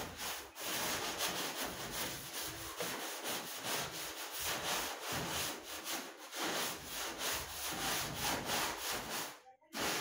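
A stiff stick broom scrubbing back and forth across a soap-lathered door: fast, rhythmic scratching at about two or three strokes a second, with a brief pause near the end.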